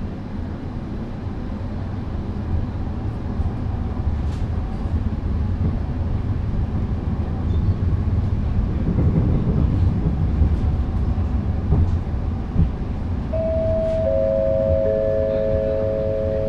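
Running noise inside a Badner Bahn light-rail car, a steady low rumble that grows a little louder midway, with a single knock. Near the end a three-note chime sounds, each note entering after the one before and then held together: the signal before the next-stop announcement.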